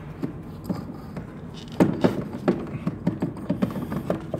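Metal knocks and clicks from a VW transfer case as it is pushed and worked into place on a DQ500 DSG gearbox. The knocks are irregular, and the loudest comes about two seconds in.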